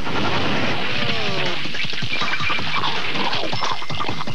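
A loud, continuous rushing crash of countless tiny hard candies (Wonka Nerds) pouring out of a box and heaping up, a produced sound effect over music. A falling tone glides down about a second in.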